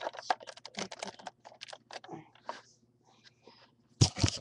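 Plastic Lego bricks clicking and clattering as the Lego gumball machine is handled up close: a quick run of clicks for about two and a half seconds, then a few scattered clicks.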